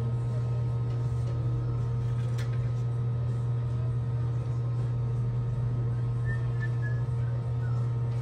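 A steady, unchanging low hum, with a few faint short whistle-like chirps near the end.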